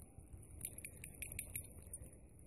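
Wind buffeting the microphone, with a quick run of about half a dozen light clinks in the middle.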